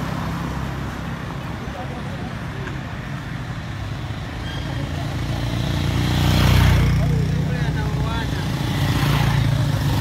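Street traffic: small motorcycle engines running as they pass close by. The sound swells to its loudest about six to seven seconds in as one rides past, and builds again near the end as another comes alongside.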